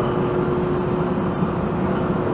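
Steady background hum and hiss with a constant mid-pitched tone and no distinct events.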